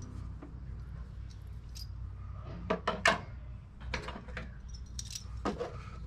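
Light clicks and clatter of small hard parts being handled and picked up, with a quick cluster of sharper clicks about three seconds in, over a low steady hum.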